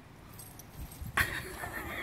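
Two dogs starting to play-fight, with light jingling of their collar tags and then, about a second in, a dog's growling vocal that wavers in pitch.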